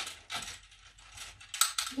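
Plastic Connect 4 counter dropped into the grid, clattering against the plastic frame as it falls: a string of quick rattling clicks, the loudest about one and a half seconds in.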